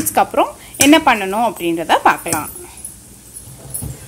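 A woman's voice speaking for the first couple of seconds, then a quieter pause ended by a single short knock.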